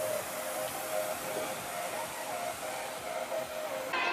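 Steady outdoor amusement-park background noise, a continuous rush of sound from the lit fountain and the park, with faint music running under it.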